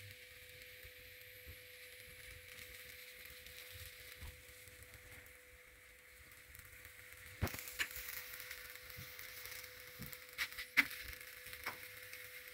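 Faint steady hiss of a stuffed radish paratha cooking dry on a hot iron tawa over a gas burner. A few sharp clicks come in the second half, the loudest at about seven and a half and eleven seconds in.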